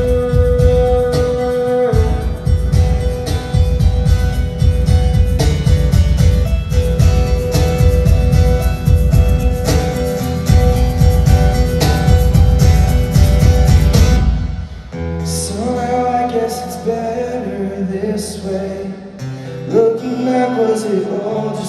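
Live acoustic band performance: two acoustic guitars strummed with a cajon beat and singing. About three-quarters of the way through, the full strumming and beat drop away to quieter, sparser guitar notes.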